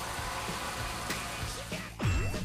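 Handheld butane torch with an infrared burner head hissing steadily close to a hanging beef rib, with faint crackles of the meat's fat sizzling, a little like firewood burning.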